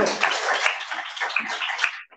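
Audience applauding, a dense patter of many hands clapping that stops abruptly near the end.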